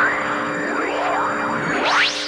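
Swooping whoosh sound effects that rise and fall in pitch several times, ending in a sharp upward sweep, over a held eerie music chord: the magic effect for a spider demon's appearance.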